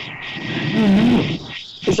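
Rasping, buzzy noise on a video-call audio line, with a low, wavering hum about a second in. The caller it may come from guesses a sheet of paper on his MacBook Pro, near its microphone, made it.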